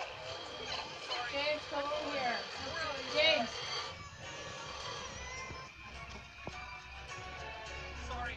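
Film soundtrack playing through a portable DVD player's small speaker: music, with voices calling out over it in the first half, then music alone.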